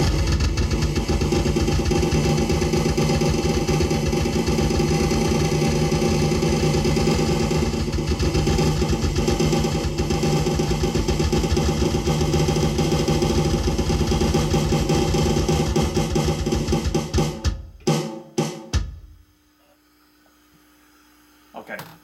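Fast, continuous drum roll on a Roland electronic drum kit's snare pad, with the bass drum played along underneath; the rapid strokes run together into a steady buzzing roll. It stops abruptly about 17 seconds in, followed by a few last separate hits.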